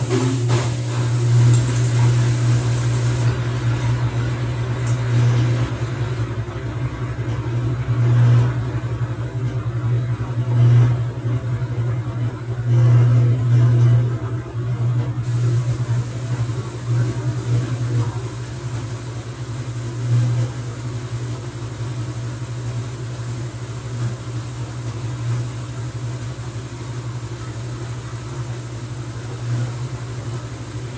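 TCL TWF75-P60 front-load inverter washing machine running, its direct-drive drum turning the bedding load with a steady low hum that swells and fades every few seconds. The sound eases slightly about halfway through.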